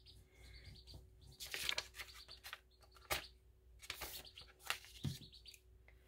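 Glue stick rubbed in faint scraping strokes over a thin old book page, several strokes at irregular intervals.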